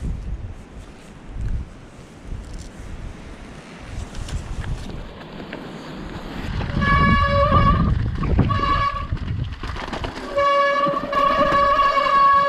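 Mountain bike's wet front disc brake, fitted with resin pads, squealing in a loud steady pitched tone as it is applied. The squeal comes twice, from about seven seconds in and again from about ten and a half seconds. Before it there is only wind rumbling on the microphone.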